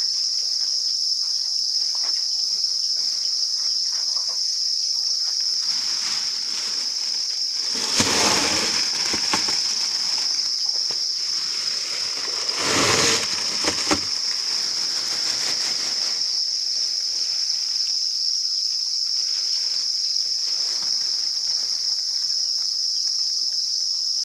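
A dense chorus of farmed crickets chirping, a steady high-pitched trill. Two brief bursts of rustling cut across it, about a third of the way in and again just past the middle.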